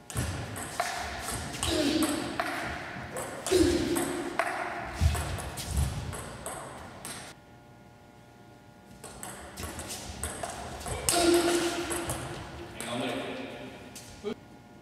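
Two table tennis rallies: a plastic ball clicking off rackets and the table in quick succession. The first rally runs over the first seven seconds; after a short pause, a second runs from about nine seconds in until near the end.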